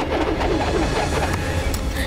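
Steady low rumble of sea surf and wind on a beach, with a few short wavering high sounds in the first second.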